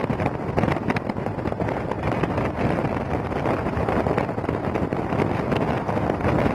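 Steady road and wind noise from a car driving along, with wind buffeting the microphone.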